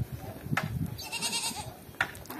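A goat bleating faintly, one wavering call about a second in, lasting around half a second.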